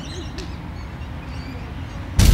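Outdoor ambience: a steady low background rumble with a few faint bird calls.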